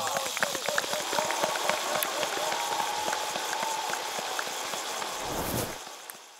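Outdoor trackside ambience: indistinct voices over a dense crackling noise scattered with short clicks. A short low whoosh comes about five seconds in, then the sound fades out.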